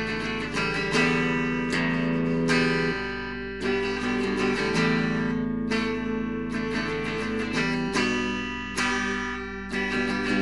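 Guitar strumming chords, an instrumental passage with the chord changing roughly every second, over a steady low hum.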